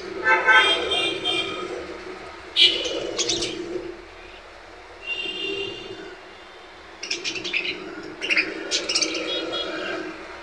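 Budgerigars chirping and chattering in short bursts, with a quieter spell in the middle.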